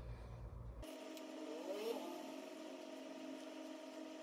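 Faint steady mechanical hum, with a brief rising whine about a second and a half in.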